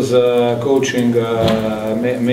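A man speaking slowly, with long drawn-out vowels and hesitation sounds.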